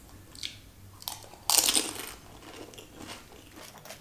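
A crisp pani puri (golgappa) shell, filled with flavoured water, crunching loudly as it is bitten about a second and a half in, followed by softer close-up chewing.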